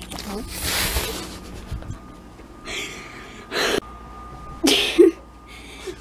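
A rustling scuffle with two dull thumps, then short breathy bursts of held-back laughter forced out through the nose and mouth.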